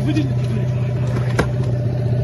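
A boat's outboard motor running at a steady, unchanging pitch. There is a brief voice at the start and a single sharp knock about one and a half seconds in.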